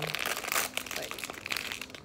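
Crinkly packaging of a blind-box figurine being opened and crumpled by hand, a dense run of crackles.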